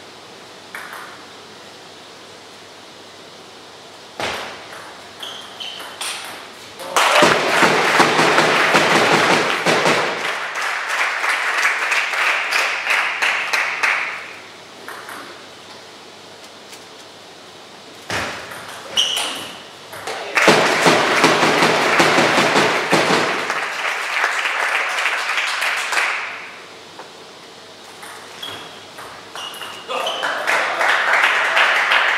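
Table tennis rallies: the ball clicks sharply off bats and table in two short exchanges. Each exchange is followed by several seconds of spectators' applause and cheering after the point.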